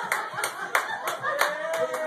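Hand clapping in a steady rhythm, about three claps a second.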